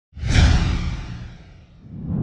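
Swooshing whoosh sound effect with a deep rumble underneath, starting suddenly and fading away over about a second and a half.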